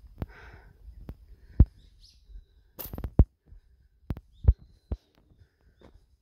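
Footsteps on a concrete road, heard as irregular low thumps, with small birds chirping now and then in the surrounding woods.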